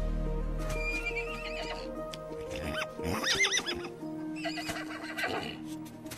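Horses whinnying over a soft orchestral score: a faint wavering whinny about a second in, a loud warbling whinny about three seconds in, and another near the end.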